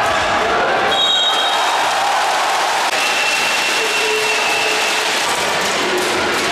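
Steady din of a basketball crowd in a sports hall: many spectators' voices and cheering blended together, with a few thin high tones, one about a second in and a longer one through the middle.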